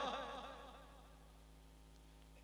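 A man's voice over a public-address system fading away in its echo during the first second. Then near silence with only a faint, steady electrical hum.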